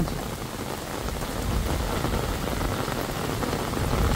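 Heavy rain falling in a steady downpour.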